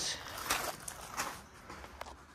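A few footsteps on gravel, three or four short scuffing steps.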